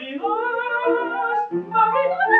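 Operetta singing: a trained voice singing with vibrato, breaking off briefly about one and a half seconds in before going on.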